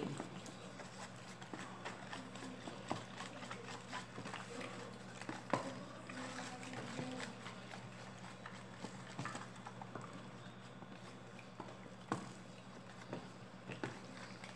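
Wooden spoon stirring a mixture of powdered soap, baking soda and warm water in a plastic tub to dissolve it, with faint, irregular taps and scrapes of the spoon against the plastic.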